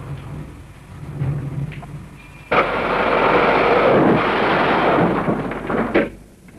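A sudden loud rumbling rush about two and a half seconds in, lasting about three and a half seconds, after faint low voices.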